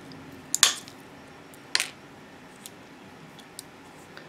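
Mosaic nippers snapping through a small glitter tile: two sharp snaps about a second apart, then a few faint ticks of the cut pieces.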